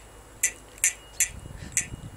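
Bicycle bell on the handlebar being worked by hand without a full ring: four short metallic clicks about 0.4 s apart, with a faint ring under them.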